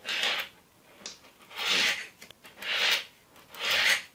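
Small magnetic balls being rubbed and slid by hand, four short rasping strokes about a second apart.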